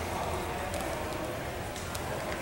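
Steady background noise of a large hall in a pause between spoken sentences, with a low hum and a few faint clicks.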